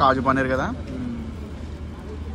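A man talking briefly at the start, then a steady low hum of road traffic.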